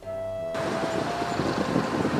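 A held background-music note stops about half a second in. A steady rushing outdoor noise takes over: wind on the microphone and road traffic.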